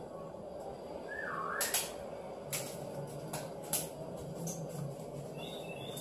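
Spoon stirring rice pudding (arroz con leche) in a pot on the stove, with a few light clinks and scrapes against the pot. A short chirping sound about a second in.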